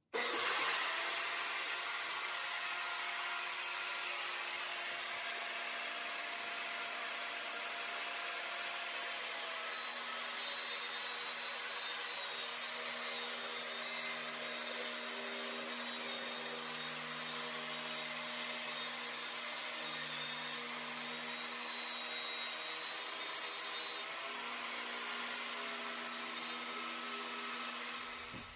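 Compact DeWalt jobsite table saw ripping a full sheet of plywood lengthwise, its motor and blade whining steadily. The whine drops slightly in pitch about nine seconds in, and the saw runs down near the end.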